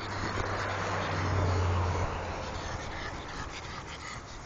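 A pug growling while it play-fights with another small dog, a rough steady rumble that swells through the middle and eases off toward the end.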